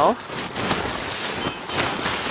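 Blue plastic tarp crinkling and snow sliding off it as it is pushed: a steady rustling hiss with a few sharper crackles.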